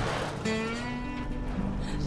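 Music with a strummed acoustic guitar, a new chord coming in about half a second in.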